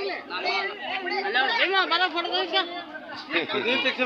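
People talking, several voices in ongoing chatter.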